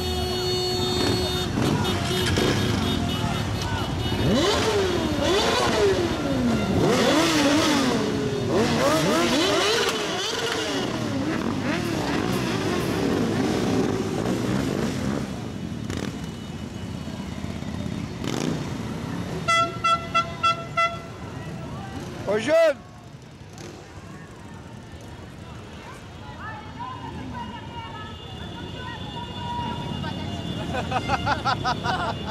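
Several motorcycle engines revving among a crowd, their pitch swinging up and down. Later a horn gives about five quick short toots, followed by one brief louder sound.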